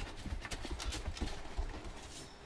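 Light footsteps and scattered clicks on a hard floor, a few irregular steps and taps with no voices.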